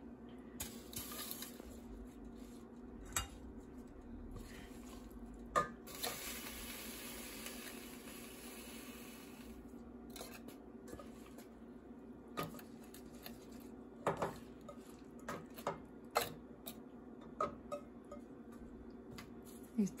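Scattered light clinks and taps of a stainless steel pot and a small steel bowl as handfuls of rose petals are laid around the bowl's edge, with a soft rustling stretch partway through. A steady low hum runs underneath.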